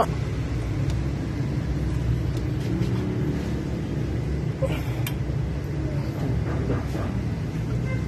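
Steady low rumble of workshop background noise, with a few light metallic clicks about five seconds in from hands working the hydraulic line fitting on a clutch slave cylinder.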